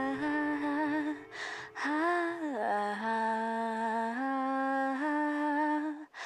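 Female lead voice humming a slow, wordless melody with almost no accompaniment: long held notes with slight vibrato and a swoop down in pitch about two and a half seconds in. A breath comes about a second and a half in.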